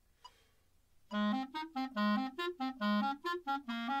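A soft click, then about a second in a clarinet starts the etude, playing short detached notes in its low register in a quick figure that rises and drops back, repeating about once a second.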